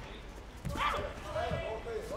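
A short, sharp shout starting about two-thirds of a second in, over ongoing shouting voices, with a couple of low thuds on the mat.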